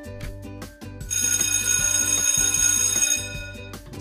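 Background music with a steady beat; about a second in, an alarm clock bell sound effect rings for about two seconds, marking the end of a countdown timer.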